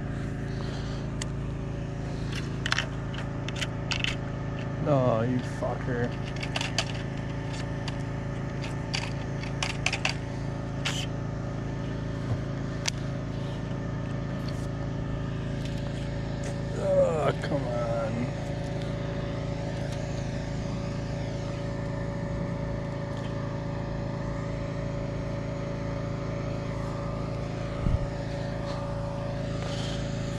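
Steady machine hum of several held tones, with scattered clicks and knocks, most of them in the first third. A voice comes in briefly twice, about five seconds in and a little past the middle.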